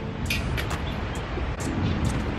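A thrown plastic-and-metal fidget spinner bouncing on brick pavers: a few short, faint clicks over a steady low rumble. The impact knocks its thumb cap off.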